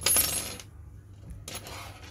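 A metal crochet hook clinking against a hard tabletop as it is put down, with a brief high ring that fades within about half a second. A fainter scrape follows about a second and a half in as it settles.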